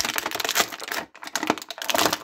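Thin clear plastic bag crinkling and crackling as an action figure is pulled out of it, with a brief pause about a second in.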